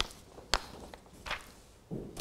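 Sheets of paper handled on a table: a sharp click about half a second in and a brief rustle a little after a second.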